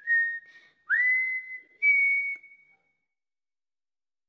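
A person whistling a short tune of three notes: a held note, a note that slides up into a longer one, and a higher last note that fades away.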